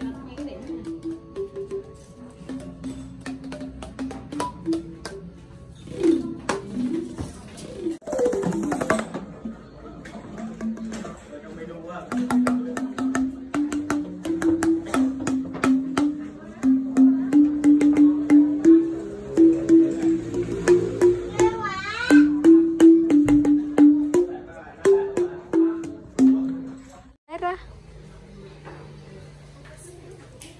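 Bamboo tube xylophone (t'rưng) struck with mallets: a string of hollow wooden notes stepping up and down the scale, with sharp mallet clicks.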